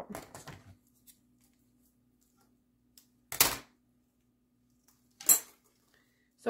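Two short, sharp handling noises, about three and a half and five seconds in, the second one louder: artificial greenery stems and craft tools being handled on a countertop. A faint steady hum lies under them.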